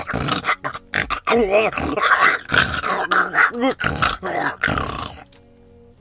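A voice performing a monster's grunts and growls in a dense run of gruff sounds that stops about five seconds in, with background music under it.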